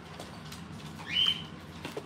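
A pet parrot gives one short whistled call about a second in, rising and then levelling off, over low room hum with a couple of faint clicks.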